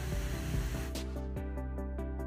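Background music with held tones and a steady beat of light ticks; a hiss under the first second cuts off about a second in.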